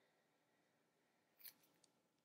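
Near silence: room tone, with one faint, brief high hiss about one and a half seconds in.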